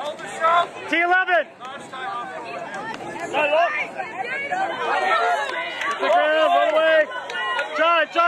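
Several raised voices shouting short calls over background chatter. The loudest shouts come about a second in and again between about five and seven seconds.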